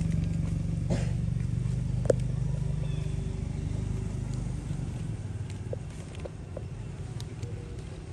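A motor vehicle engine running, a steady low hum that gradually fades away, with one sharp click about two seconds in.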